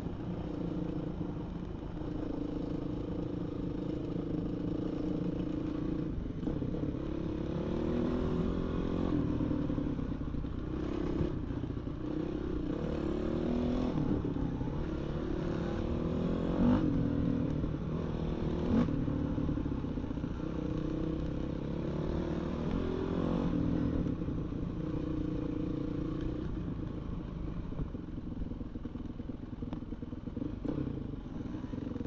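Dirt bike engine running under the rider, its pitch rising and falling with the throttle through the middle of the ride, over a steady clatter. Two sharp knocks stand out a little past the middle.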